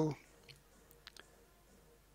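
A few faint computer mouse clicks spread over about a second, over low room tone.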